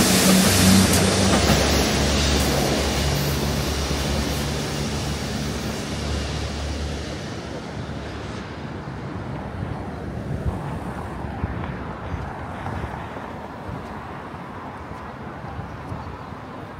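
Passenger train passing on the tracks, its engine drone and wheel noise loudest at first and fading over about eight seconds as it pulls away, leaving a steady low hum.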